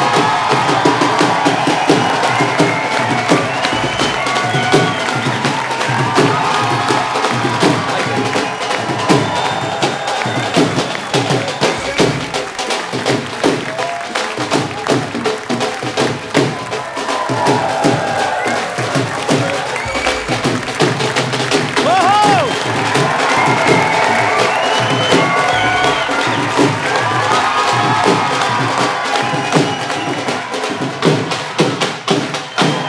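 Dhol drums beating a fast, continuous rhythm in upbeat music, with a studio audience cheering.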